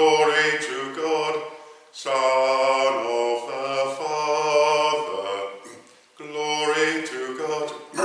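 A single unaccompanied male voice sings a liturgical chant in held, stepping notes. The singing comes in three phrases, with short breaks about two seconds in and again near six seconds.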